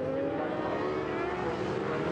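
Two superbike racing motorcycles running at speed: a Suzuki GSX-R1000 inline-four and a Ducati 1198 V-twin. Their engine notes blend and glide gently in pitch.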